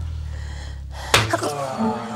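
A sharp, sudden gasp about a second in, with a brief voiced catch of breath after it, over a low sustained musical drone that fades out as the gasp starts.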